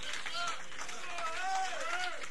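Audience voices reacting aloud without clear words: a short high call about half a second in, then a longer high voice rising and falling through the second half, over faint room noise.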